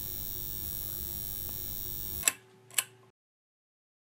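A steady electronic hiss with a faint hum, then two sharp clicks about half a second apart, after which the sound cuts off to silence.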